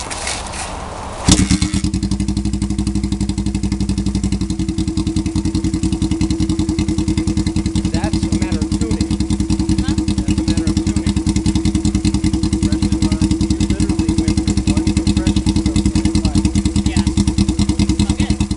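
A Honda CB350 parallel-twin is kick-started and catches about a second in. It then idles steadily with an even, rapid pulsing from its 2-into-1 exhaust.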